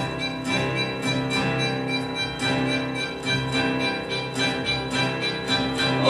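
Instrumental accompaniment to a show tune, with no singing: held notes under chords struck about twice a second.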